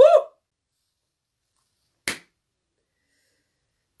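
A man's voice trails off on a last word at the very start, then near silence, broken once about two seconds in by a short hiss.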